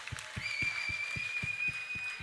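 Quiet music from the stage band: an even pulse of soft low thumps, about five a second, joined about half a second in by a steady held high note.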